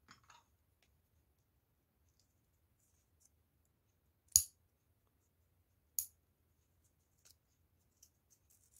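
Two sharp metallic clicks from metal craft tweezers, about a second and a half apart, the first louder, with a faint rustle of handling at the start.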